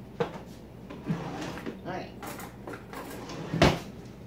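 Kitchen cupboard being opened and shut as a jar of minced garlic is fetched: a few light clicks and knocks, then one loud, sharp knock near the end.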